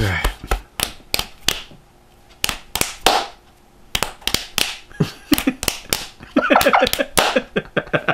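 Hands slapping: fists pounded into open palms for rounds of rock-paper-scissors, a run of sharp smacks. Laughter breaks out near the end.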